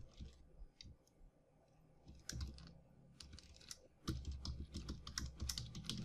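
Computer keyboard typing: faint, scattered keystrokes that come in a quicker run in the second half.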